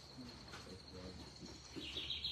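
Quiet pause with a faint, steady high-pitched tone and a faint low murmur underneath.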